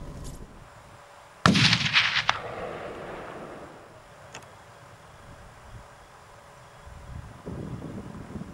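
A single hunting-rifle shot about one and a half seconds in, its report rolling away over the hillside for about a second. It is the cull shot that drops a red deer hind.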